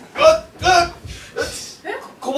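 A man's voice in three short, loud bursts just after drinking from a mug, the first the loudest.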